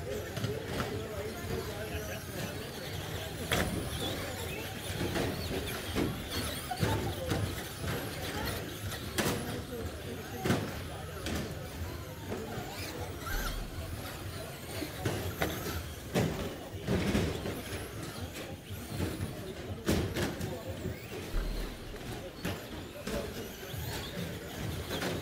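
Traxxas Slash RC short-course trucks racing on an indoor turf track: motors and tyres running over the chatter of a crowded hall, with several sharp clatters spread through the race.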